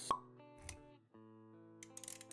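Intro sound effects over background music with held notes: a sharp pop right at the start, then a soft low thud near the middle, with a few light clicks near the end.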